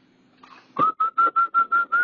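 A quick run of about seven short whistled notes, all on the same pitch, about five a second, starting just under a second in.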